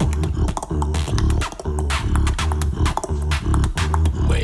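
Human beatboxing: a steady beat of deep vocal bass hits, about two a second, with sharp mouth-made snare and hi-hat clicks between them.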